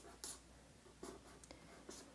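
Faint scratching of a pen writing on paper, in a few short strokes, against near silence.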